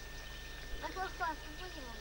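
A few short, faint, high-pitched spoken syllables about a second in, the last falling in pitch, over steady background hiss and a thin constant whine.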